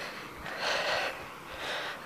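A person's breathing close to the microphone: one longer breath about half a second in and a shorter one just before speech resumes.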